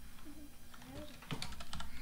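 Computer keyboard keys being typed: a faint click early on, then a quick run of four or five keystrokes in the second half.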